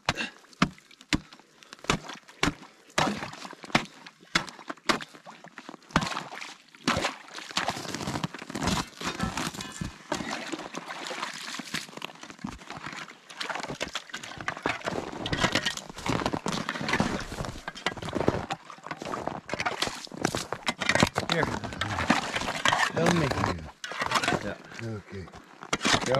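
Steel ice chisel chopping into ice to reopen a hole, sharp strikes about two a second. After about seven seconds the strikes give way to a denser jumble of ice chunks knocking and crackling, with water sloshing in the hole.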